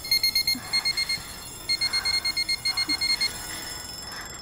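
Electronic alarm beeping: rapid high-pitched beeps in bursts, with a short break a little over a second in, stopping a little after three seconds in.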